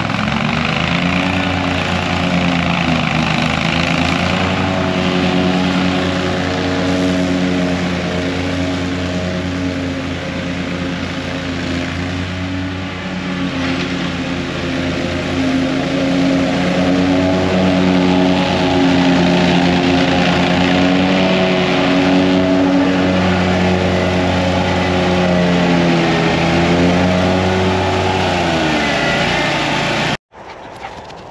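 A John Deere Z970R zero-turn mower's engine running steadily while mowing. Its pitch dips briefly near the start, again about three seconds in, and once more near the end.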